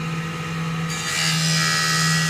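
A bench saw with a toothless, edge-coated cutting disc runs with a steady hum. About a second in, it begins cutting into a piece of raw amber with a loud, harsh grinding hiss that keeps going.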